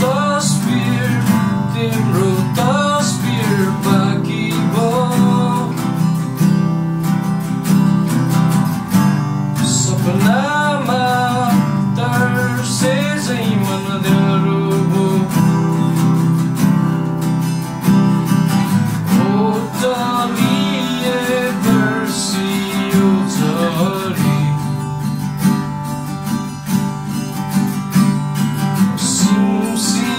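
Two acoustic guitars playing chords together, with a man singing a slow melody over them.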